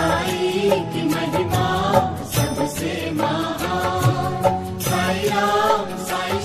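Background music: a devotional chant sung over a steady beat.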